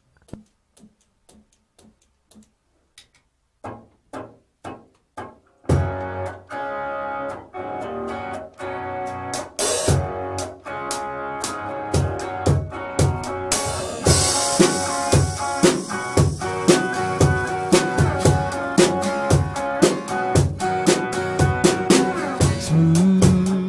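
A country band's intro: quiet clicks for the first few seconds, then about six seconds in electric and acoustic guitars come in strumming chords over a drum kit keeping a steady beat. Cymbals join about fourteen seconds in.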